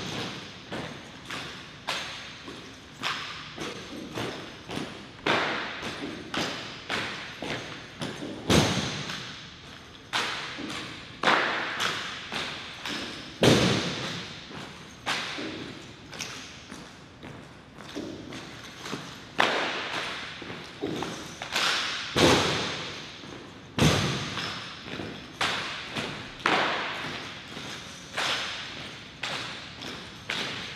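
Silent rifle drill by a ceremonial drill team. Hands slap on bayonet-fixed rifles, and rifle butts and boots knock on a hard floor. The sharp knocks come about one to two a second, with a few louder strikes standing out, and each one echoes briefly in the hall.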